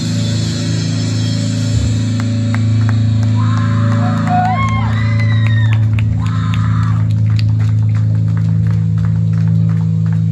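Live death metal band on electric guitar and bass, holding a low, ringing chord. Short gliding high tones rise and fall in the middle, and scattered sharp hits come in the second half.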